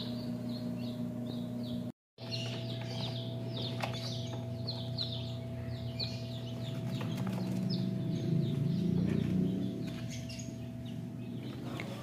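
Newly hatched chicks peeping continuously inside an incubator, a stream of short, high, falling peeps several times a second, over a steady low hum. The sound cuts out for a moment about two seconds in.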